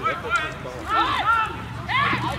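Several voices shouting and calling out at once at a football match, players and spectators overlapping, with the loudest calls about a second in.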